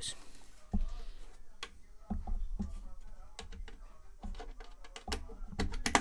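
Typing on a computer keyboard: irregular key clicks, a few at a time with short pauses between them.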